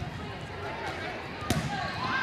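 A volleyball struck once with a sharp smack about a second and a half into a rally, over the steady chatter of players and spectators in the hall.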